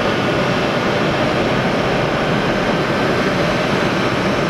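Pratt & Whitney F117-PW-100 turbofans of a C-17 Globemaster III (RCAF CC-177) idling on the ground: a steady rushing noise with a faint steady whine.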